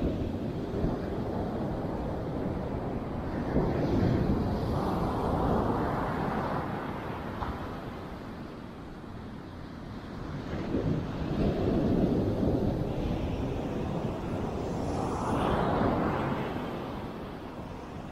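Ocean surf breaking and washing up a sandy beach, swelling and fading in slow surges every few seconds, with wind buffeting the microphone.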